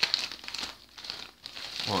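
Plastic packaging crinkling and rustling unevenly as hands pull a wrapped item out of a mailing bag, with a couple of brief lulls.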